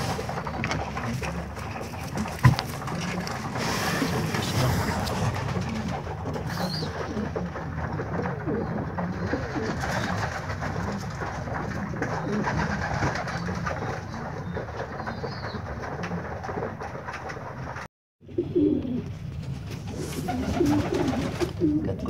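Domestic pigeons cooing in a loft over a steady background hiss, with one sharp click about two and a half seconds in. The sound cuts out briefly near the end.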